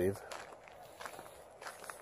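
Footsteps walking on a gravel road: soft, evenly paced crunching steps.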